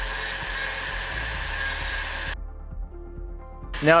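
Flex-shaft rotary carving tool spinning a small burr against wood: a steady high whine with a grinding hiss, which cuts off abruptly a little past halfway.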